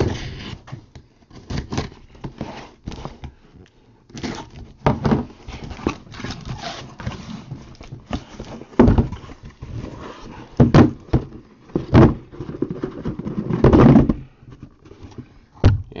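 A cardboard case being slit open along its packing tape with a box cutter, then its flaps pulled back and the case handled, with scraping cardboard and several dull thuds in the second half.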